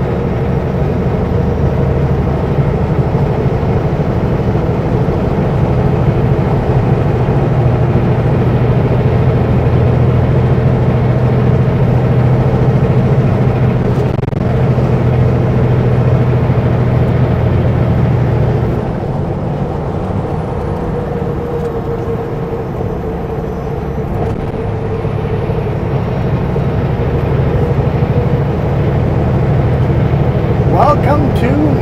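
Kenworth W900L semi truck's diesel engine pulling steadily at road speed, a low drone with a faint high whine. About two-thirds of the way through, the engine note and the whine drop off for a few seconds, then build back up near the end.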